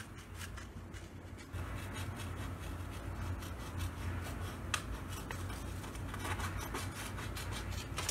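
Scissors cutting through a sheet of paper: a run of short, irregular snips as circles are cut out.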